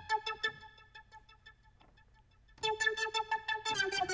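Ableton Analog software synth patch, run through chorus, reverb and ping-pong delay, played from a MIDI keyboard: a burst of short repeated notes fading away about a second in, then a louder run of notes from about two and a half seconds in.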